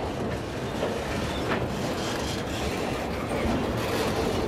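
Container freight train wagons rolling steadily past, a continuous rumble and clatter of steel wheels on the rails.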